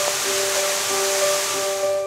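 Steady rushing of a waterfall, with slow music notes coming in over it; the water sound cuts off suddenly at the end.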